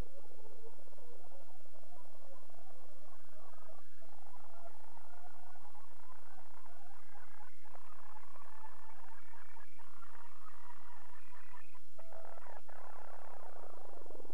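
Tascam 32 reel-to-reel deck rewinding with the tape against the heads, so the recorded music is heard as a sped-up, garbled chatter. It rises steadily in pitch as the reels gather speed, then drops away sharply near the end as the tape brakes to a stop.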